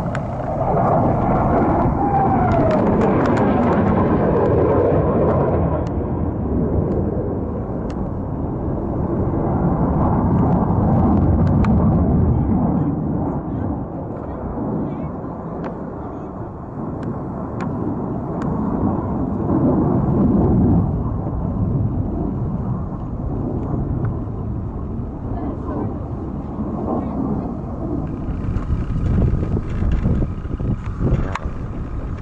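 Jet engine noise from Blue Angels jets flying past: a loud rumble that swells and fades in waves, loudest in the first few seconds, around ten to twelve seconds in, and again around twenty seconds in. A falling whine comes about two seconds in as a jet goes by.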